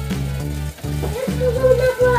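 Background music with a steady bass line and chords changing about every half second. A woman speaks briefly near the end.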